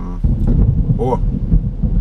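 Thunder rumbling, heard from inside a car: a low rumble breaks in suddenly about a quarter second in and keeps rolling.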